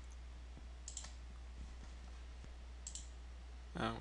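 A few faint computer mouse clicks, about a second in and again near three seconds, over a steady low electrical hum.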